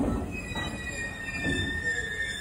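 JR Central 373 series electric train pulling away, its wheels squealing in steady high tones from about half a second in, over a low rumble with a few knocks.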